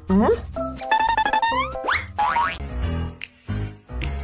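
Upbeat background music with a repeating bass beat. In the first two seconds, springy cartoon 'boing' effects slide upward in pitch over it.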